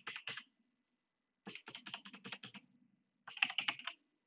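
Typing on a computer keyboard in short bursts: a few keystrokes at the start, a run of about ten keys in the middle, and a quicker burst near the end.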